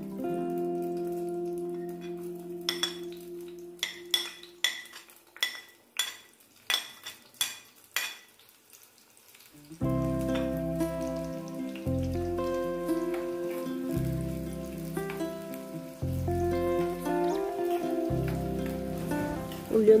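Chopped onion and curry leaves frying in hot oil in a small pan, with a run of sharp crackling pops for several seconds. Background music fades at the start and comes back about ten seconds in with a steady bass beat.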